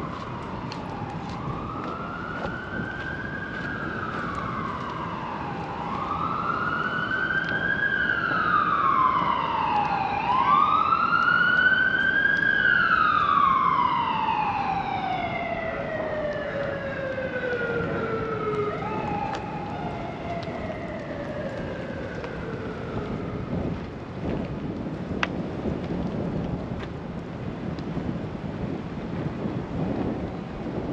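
An emergency vehicle's siren wailing, its pitch sweeping slowly up and down every four seconds or so and growing louder toward the middle. It then slides down in long falling glides and fades away as the vehicle passes.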